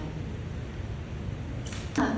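Steady low room hum through a handheld microphone. Near the end comes a short, sharp breath drawn in close to the microphone, with a small click, just before speech resumes.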